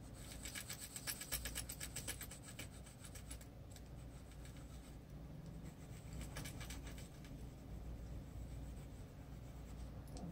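Prismacolor colored pencil scratching on paper in rapid short back-and-forth shading strokes: one burst of about three seconds, then a shorter one a little past the middle.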